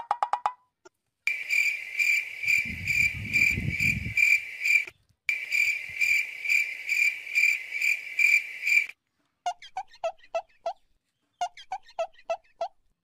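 Cricket-chirping sound effect: a high chirp pulsing about three times a second, with one short break, starting and ending abruptly. It is followed near the end by a run of short, lower blips.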